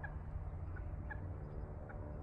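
Quiet outdoor background with a steady low rumble and about five faint, short high chirps from birds, scattered through.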